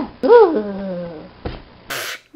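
A single high, animal-like cry that rises and then slides down over about a second, followed by a short click and a brief hiss of noise at the end.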